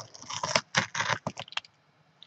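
Plastic wrap on a sealed trading-card box being picked at and torn open, crinkling in a quick run of crackles for about a second and a half, then stopping.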